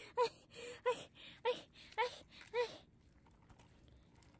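Baby's short, high-pitched cooing calls, each rising and falling in pitch, about five in a row a little over half a second apart, stopping a little under three seconds in.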